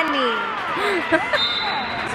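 Girls' voices talking and calling out in a school gym, not picked out as words. A steady high tone starts about two-thirds of the way through.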